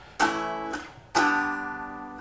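Hollow-body electric guitar, played unamplified, strummed twice: two chords about a second apart, each ringing and fading. It is played to show the song's original key of E.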